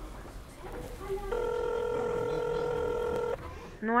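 Telephone ringback tone: one steady ring of about two seconds on a single low pitch, the outgoing call ringing on the line before it is answered. A woman's voice answers near the end.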